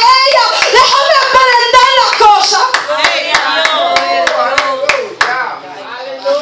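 A woman singing and calling out fervently through a microphone, with steady hand clapping in time, about two to three claps a second. The clapping and voice stop about five seconds in.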